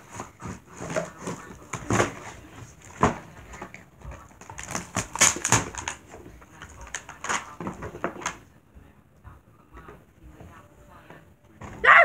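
Irregular knocks and clicks, several close together at times, for about eight seconds, then it goes quieter.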